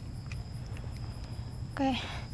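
Night insect chorus of crickets chirping steadily, with a high, evenly pulsing trill over a low steady rumble.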